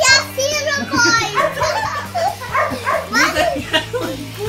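Young children's voices calling and shouting excitedly in play, with a high-pitched cry near the start, over steady background music.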